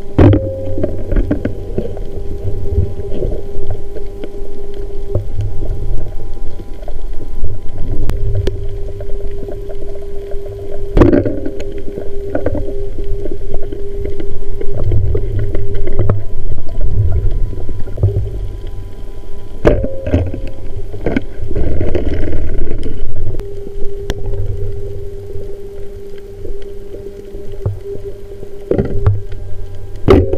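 Underwater sound picked up by a diving camera: a heavy low rumble of moving water with a steady hum running through it, and a few sharp clicks, one at the start, one about a third of the way in and one about two-thirds in.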